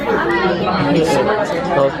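Chatter of several voices talking over one another in a busy restaurant.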